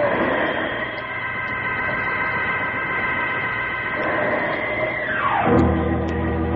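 Radio-drama organ music bridge: sustained chords over a noisy haze, then a steep falling glide about five seconds in that drops onto a low, sustained organ chord.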